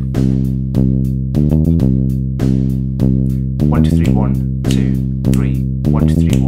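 MIDI drum beat of kick and hi-hats played back with a low bass line, in an odd meter of 15/16 sixteenth notes. The hits come at a steady, uneven-grouped pulse under the sustained bass notes.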